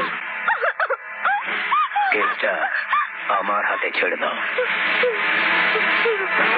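A woman's distressed cries, a string of short wails rising and falling in pitch, over background music from a film score; the music fills out in the second half.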